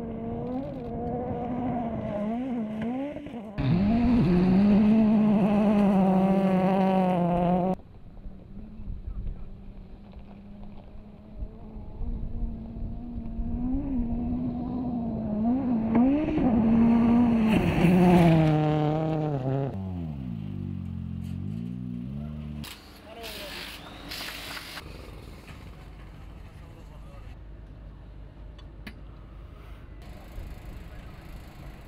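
Ford Fiesta RRC rally car's turbocharged four-cylinder engine revving hard, its pitch climbing and dropping in steps with the gear changes, loudest in two stretches as the car passes close. Near the end of the second stretch the pitch falls away as it goes by, followed by a few sharp cracks.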